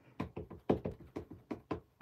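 A clear acrylic stamp block tapped again and again onto an ink pad, about five light taps a second, inking a rubber stamp.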